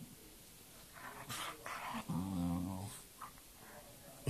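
A dog growls low for nearly a second, about two seconds in, after a few short breathy rushes of noise.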